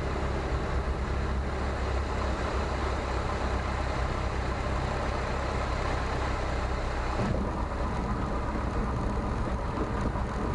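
Luscombe 8A's engine running throttled back with rushing air noise, heard from inside the cockpit during the landing approach and flare; the low rumble changes character about seven seconds in.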